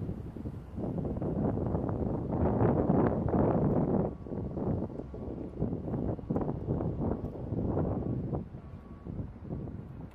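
Wind buffeting the microphone in uneven gusts, loudest about two to four seconds in and easing toward the end.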